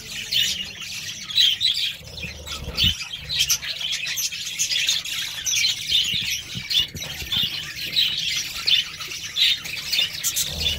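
Budgerigars chirping: a steady stream of short, high, rapid chirps and squawks.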